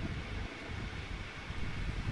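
Wind buffeting an outdoor microphone: an uneven low noise with a faint steady hiss above it.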